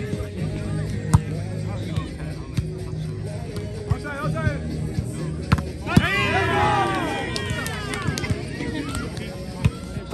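Volleyball rally: sharp slaps of the ball being struck, the loudest about a second in and just before six seconds, then many voices shouting at once for about two seconds. Music plays throughout underneath.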